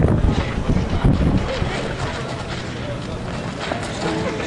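Wind buffeting an outdoor microphone, a low rumbling roar that is heavier in the first second or so, with faint indistinct voices beneath it.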